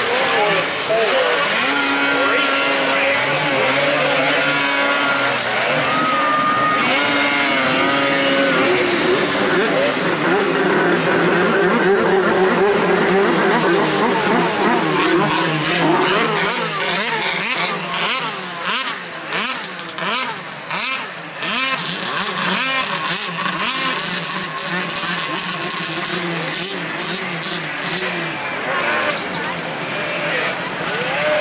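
Several 600-class two-stroke race snowmobiles running around a snocross track, their engines revving up and down as they pass, strongest in the first half. Later the engine sound thins out and a quick run of sharp crackles comes in.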